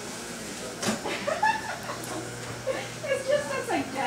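Indistinct talking, with a sharp click about a second in.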